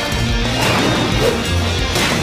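Soundtrack music under crashing impact sound effects of a cartoon fight, as giant mechanical fists smash into rock creatures.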